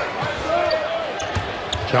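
Game sound from a live NBA basketball game in an arena: the steady noise of the crowd, with the basketball bouncing on the hardwood court.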